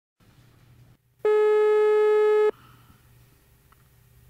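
Telephone ringback tone on the caller's line: one steady buzzing tone about a second and a quarter long, the called phone ringing once, with faint line hiss before and after.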